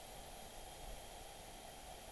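Faint, steady background hiss with no distinct sound: a pause in the voice chat.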